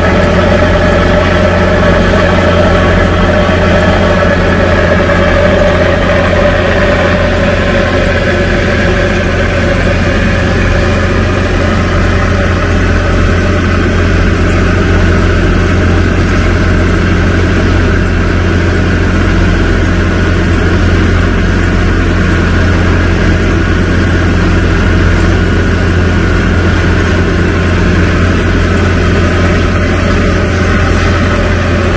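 Diesel engine of a tracked tractor running steadily under load as it pulls a tillage implement through the soil, heard close up from the tractor, with a deep, constant drone. The tone shifts slightly about a quarter of the way in.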